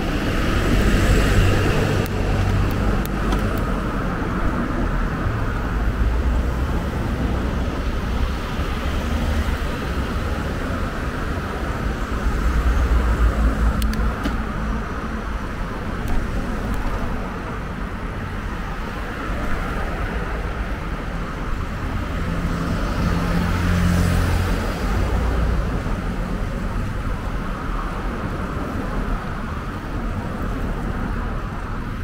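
Road and traffic noise heard from a moving bicycle: a steady rumble with wind buffeting the microphone, swelling now and then as cars pass, loudest about three-quarters of the way through.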